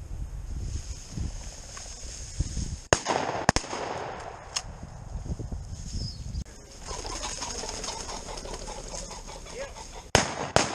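Wind buffeting the microphone, with dry grass and brush rustling as the camera wearer pushes through cover. About three seconds in come two sharp cracks about half a second apart.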